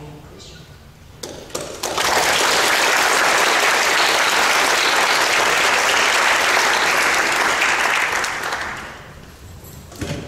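Audience applauding: a few scattered claps about a second in, swelling quickly into full, steady applause that fades out near the end.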